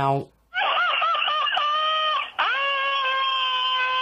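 A person screaming: two long, high-pitched screams, the first wavering in pitch before it levels out, the second held steady.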